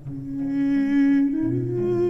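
Background music: a slow melody of long held notes, stepping up in pitch, over a low bass line.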